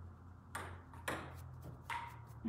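Dry-erase marker writing on a whiteboard: three short scratchy strokes, the last ending in a brief squeak near the end, over a low steady hum.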